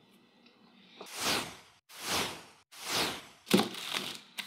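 Three whooshes, each swelling and fading, about a second apart. Then a few sharp knocks near the end as a plastic jar and a bag of ice cream bars are set down on a table.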